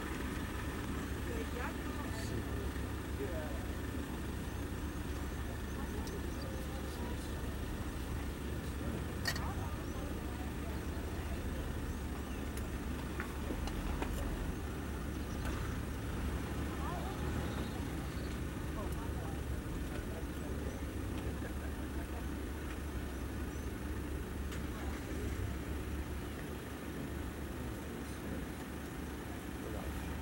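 Safari game-drive vehicle's engine running with a steady low rumble.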